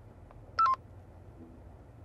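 A short two-note electronic beep, a higher note stepping down to a lower one, about half a second in, over a faint low hum.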